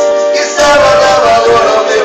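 Sertanejo song: a voice singing a gliding melodic line over instrumental accompaniment.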